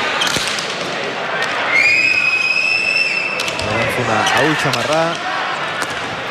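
Hand-pelota ball being struck by hand and rebounding off the front wall and floor of an indoor fronton during a rally: sharp smacks that ring in the hall. A long high-pitched tone is held for about a second and a half in the middle, and voices rise near the end.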